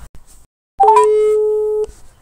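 Electronic telephone tone on the call line: a quick rising chirp, then one steady beep held for about a second that cuts off abruptly.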